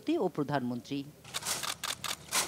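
A woman speaking Bengali for about the first second, then a quick run of short, sharp clicks.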